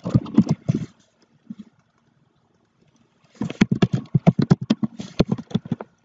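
Computer keyboard keys clicking in quick bursts: a short run at the start, then a longer, rapid run of about ten keystrokes a second from about three seconds in.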